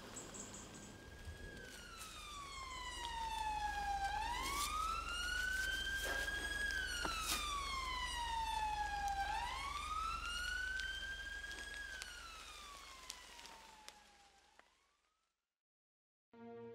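Emergency-vehicle siren in a slow wail, its pitch sweeping down and back up about every five seconds. It grows louder and then fades away to silence near the end, over a low steady rumble.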